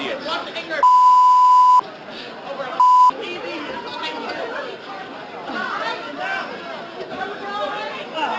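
A crowd of shoppers shouting and chattering during a scuffle, cut twice by a loud, steady censor bleep: about a second long, then a short one, covering swearing.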